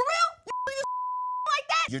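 An editor's censor bleep, a steady high beep dubbed over a man's exclaimed speech: a short bleep about half a second in, then a longer one lasting about half a second, with clipped bits of his words between and after.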